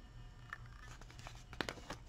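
Page of a small paper picture book being turned: a few faint papery rustles and ticks, most of them bunched together about one and a half seconds in.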